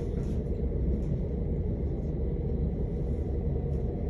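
Steady low rumble of a passenger train running along the track, heard from inside the carriage.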